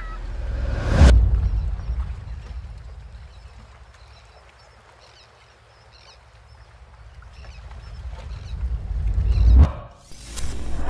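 Cinematic sound-design outro: a deep boom about a second in that fades into a quiet stretch with faint high chirps, then a rising swell that builds for several seconds and cuts off sharply just before the end.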